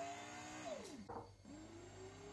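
Tefal Pain Doré bread maker's motor running quietly just after starting. Its whine rises slowly in pitch, slides down sharply about 0.7 s in as it stops, then starts rising again about halfway through.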